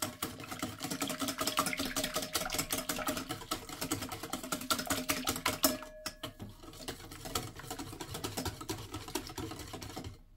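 Wire balloon whisk beating a thin egg-and-yeast batter in a bowl: a fast, steady clatter of the wires against the bowl, with a brief pause about six seconds in.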